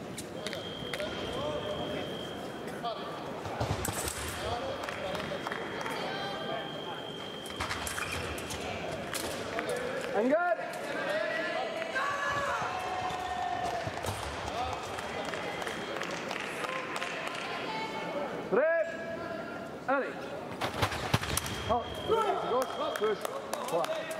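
Fencers' shoes squeaking on the piste in a large sports hall: short chirping squeaks once about ten seconds in, again near nineteen seconds, then several in quick succession near the end as the fencers take guard and start to move. Indistinct voices carry in the hall throughout.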